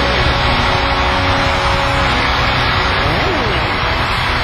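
Loud rock music dominated by a heavily distorted electric guitar, a dense sustained wash of sound with a few quick pitch slides about three seconds in.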